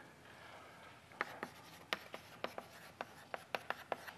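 Chalk on a blackboard as something is written: a quiet run of irregular sharp taps and short scrapes, starting about a second in.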